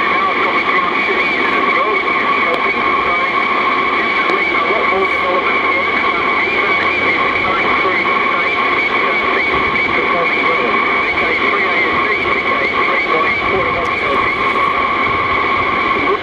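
An off-air recording of a 160-metre AM voice transmission, replayed over the air and heard through the speaker of a Seacom 40B 160-metre transceiver: a voice half-buried in band noise, with a steady whistle under it that stops at the very end.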